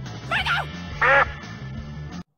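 Two short quacking calls, about two-thirds of a second apart, over background music.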